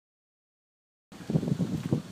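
Dead silence for about a second, then wind buffeting the microphone of a handheld iPhone 4s in a rough, uneven low rumble.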